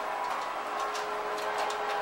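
Light clicks and handling noise of a DVI cable connector being worked loose from the back of a desktop PC's graphics card. Under it runs the steady hum of the running computer, with a faint high whine.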